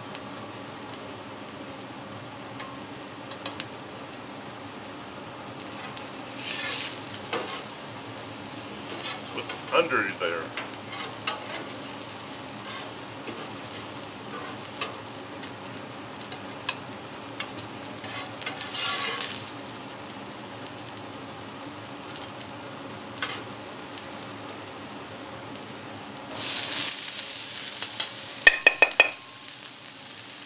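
Vegetable oil and mixed vegetables sizzling on a hot flat-top griddle: a steady sizzle that surges louder several times as food hits the hot steel. A quick run of sharp taps comes near the end.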